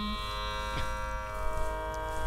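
A steady drone of many sustained pitches, the sruti that underlies Carnatic singing, sounding on its own between sung phrases. A held low sung note ends just as it begins.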